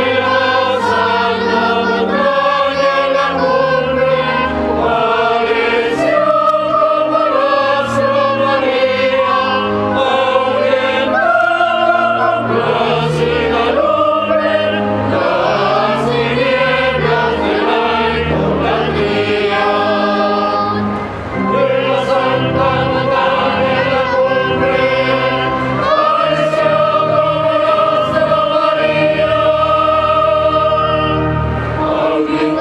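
Church choir singing a closing hymn after the dismissal of the Mass, in long held notes over low sustained accompaniment.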